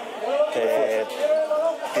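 A man speaking in a hesitant, drawn-out way, with a long held vowel near the middle, as he begins an answer.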